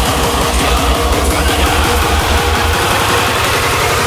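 Raw hardstyle dance music: a rapid, quickening roll of distorted kick drums building up under a noisy high lead. The low end drops out right at the end.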